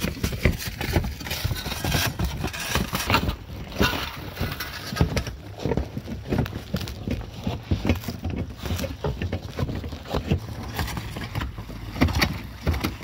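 Irregular knocks and scrapes of roofers' hand tools working on a roof during a shingle tear-off, over a low steady rumble.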